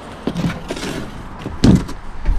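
A cardboard box being handled: scattered knocks and rustling, then one loud thump near the end.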